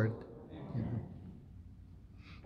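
A man's spoken phrase ending, its echo dying away in a large reverberant church. A faint, brief voice-like sound follows about half a second in, then quiet room tone.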